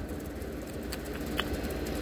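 Small two-stroke engine of a Harbor Freight Tailgator portable generator running steadily, a constant low drone. Its owner says everything is running good on the original spark plug at about 20 hours.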